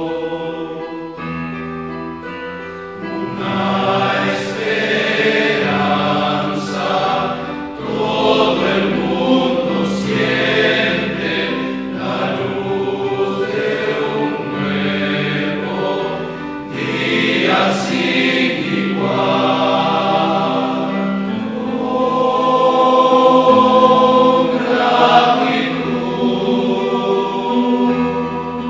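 A choir singing a slow communion hymn in long, held notes.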